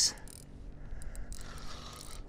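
Fixed-spool spinning reel being wound in against a hooked fish, its gears giving a faint mechanical whirr.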